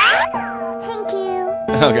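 Light children's background music with held tones, and a quick falling cartoon sound effect right at the start. A voice comes in near the end.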